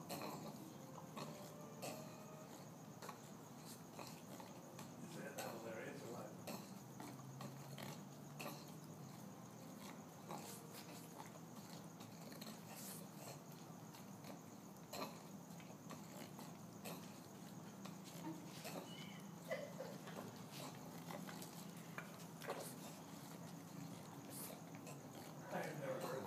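English bulldog breathing and snuffling noisily, with occasional grunts, over a low steady background hum.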